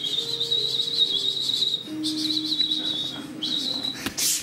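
A loud, high-pitched warbling whistle in three blasts: a long one, a shorter one, and a brief one near the end, each opening with a quick rise in pitch.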